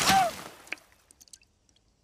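Cartoon water splash as a bucketful of water is thrown over a potted plant, followed by a single sharp knock under a second in and a few scattered small ticks that fade out.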